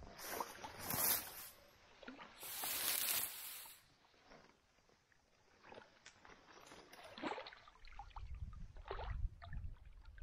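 Bursts of rustling close to the microphone, dry grass and clothing brushing, about a second in and again from about two and a half to three and a half seconds, then faint scattered clicks and a low gusty rumble of wind on the microphone near the end.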